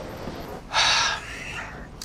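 A person's sharp audible breath, a gasp or huff, about half a second long and just under a second in, trailing off.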